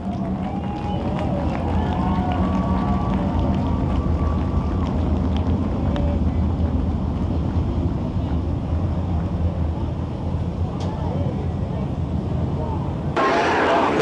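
A field of dirt modified race cars' V8 engines running at low revs as the pack circles the track before the start, a steady low rumble. Near the end a man's voice over the public address comes in loudly.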